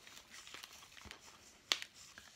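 Faint crinkling and rustling of thin plastic plant pots and potting soil as fingers press the soil down around a pineapple top, with one sharp click near the end.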